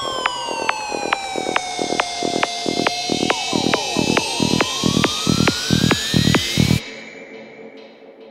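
Dark progressive psytrance: a synth tone sweeps down and then climbs steadily in pitch over a run of percussive hits, about four a second. Near the end the sweep and the hits cut off, leaving a quieter wash of sound.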